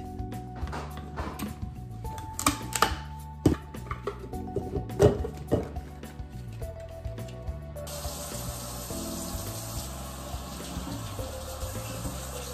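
Background music, with a few sharp knocks and clicks of handling in the first part. About two-thirds of the way in, a kitchen tap starts running water into the sink as a plastic popcorn popper is rinsed, and it runs on steadily.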